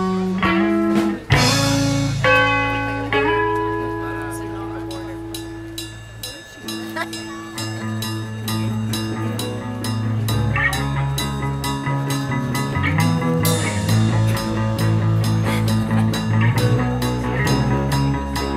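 Live rock band playing an instrumental break on electric guitar and electric bass. Held chords ring and fade over the first six seconds, then the band comes back in with a steady beat over the bass line.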